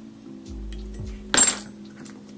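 A single sharp metallic click from fly-tying tools about one and a half seconds in, as the thread is whip-finished at the head of the fly, over soft background music.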